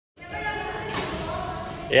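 Echoing badminton hall ambience: overlapping background voices of players, with one sharp racket strike on a shuttlecock about a second in.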